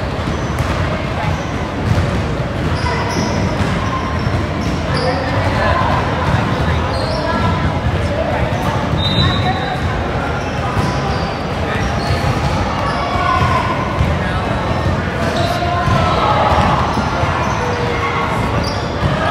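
Basketball bouncing on a hardwood gym floor, with voices of players and spectators echoing in a large gym hall.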